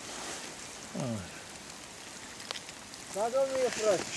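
A man's voice, a brief falling murmur about a second in and a spoken word near the end, over a steady faint hiss, with one sharp click about two and a half seconds in.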